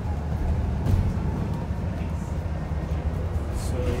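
Cabin noise on the upper deck of an Alexander Dennis Enviro400 MMC double-decker bus under way: a steady low engine and road rumble, with a light knock about a second in.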